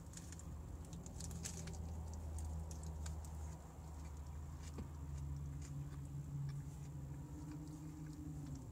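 A person chewing a large mouthful of bacon cheeseburger, with small wet mouth clicks and smacks throughout. A low hum runs underneath and grows more tonal in the second half.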